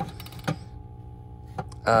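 A few light clicks and knocks of small items being handled in a cabinet, one at the start, one about half a second in and one just before a spoken "uh" near the end, over a faint steady hum.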